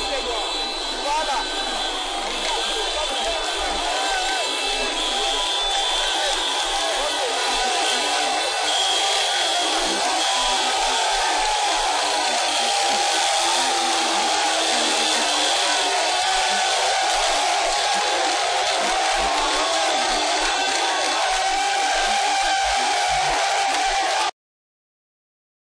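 A large crowd of many voices shouting and cheering at once, with small motorcycle engines running underneath.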